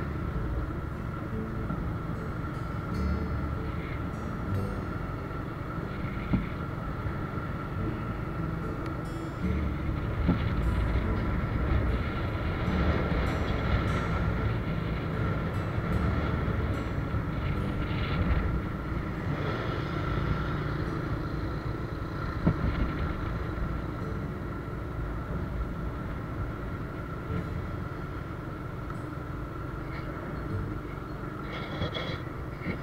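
Riding noise of a moving motorbike: steady engine hum, tyre and road noise, and wind rumble on the microphone, with a steady high-pitched tone throughout. There are two sharp knocks, about 6 and 22 seconds in.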